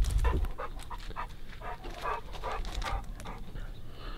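A dog panting in quick, irregular breaths.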